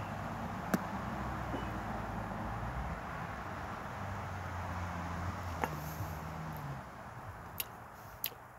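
A distant engine humming steadily at a low pitch, fading away near the end, with a few faint clicks.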